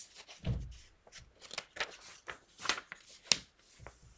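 Pages of a paperback picture book being turned and handled: a run of papery rustles and a few sharp flicks, with a low thump about half a second in.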